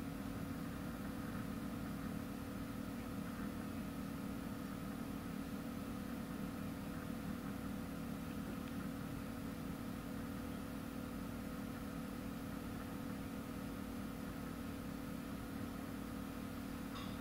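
Steady low hum with a faint higher tone above it, unchanging throughout: background machine or electrical hum in a small room.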